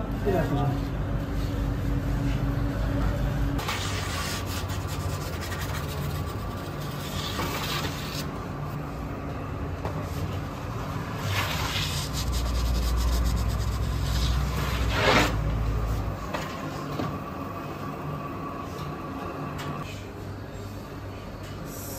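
Four drawn-out scraping strokes, roughly four seconds apart, over a steady low rumble; the last stroke is the loudest.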